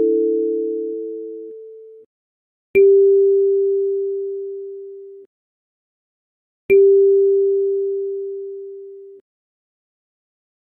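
Kalimba notes played slowly one at a time: an A4 rings out, then the G4 tine is plucked twice about four seconds apart. Each note is a single pure tone with a soft click at the start, fading over a couple of seconds and then cutting off abruptly.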